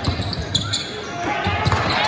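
Basketball dribbled on a hardwood gym floor, several bounces, over crowd chatter and shouting echoing in the gym.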